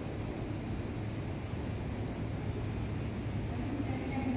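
Steady low background rumble with a faint hum underneath, even throughout, with no speech and no distinct events.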